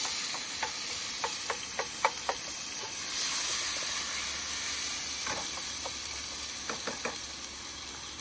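Fresh tomatoes with garlic sizzling steadily in olive oil in a frying pan on a portable gas camp stove. A wooden spoon stirs them, giving light taps against the pan several times early and again around five to seven seconds in.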